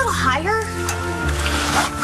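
Background music with steady sustained tones, and a brief bit of speech near the start.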